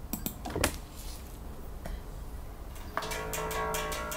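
Electric bass: a few sharp clicks of string and hand noise in the first second, then one plucked note that starts suddenly about three seconds in and rings on for over a second.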